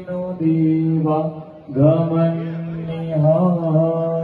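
Male voice chanting in long, held notes, with a short break just before two seconds in.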